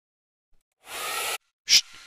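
Handheld hair dryer blowing in a short burst of about half a second, then coming on again near the end and running on more quietly, drying fresh paint-pen lines on an acrylic painting so they don't smear.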